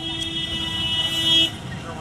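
A vehicle horn held down in one long steady blast that cuts off about one and a half seconds in, over a low rumble of slow-moving cars.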